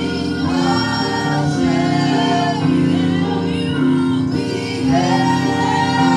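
A woman singing a gospel praise song into a microphone, her voice gliding and wavering over steady held chords of backing music.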